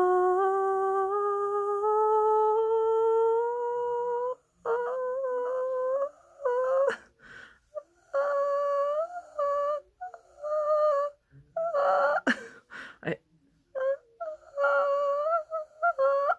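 A voice on a vocal range test, deepened by 12 weeks of testosterone. For about four seconds it holds one note that climbs gradually in pitch, then makes a series of short, effortful attempts at notes near the top of its range, around E-flat 5, with gaps and breathy sounds between them.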